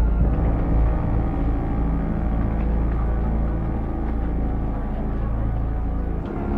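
Dark, tense background music, mostly a deep, steady rumbling drone with sustained tones above it.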